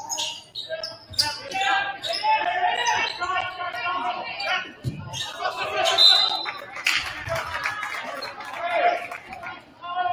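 Basketball dribbled on a hardwood gym floor in a large hall, the bounces coming as short sharp knocks among shouting voices from players and the crowd.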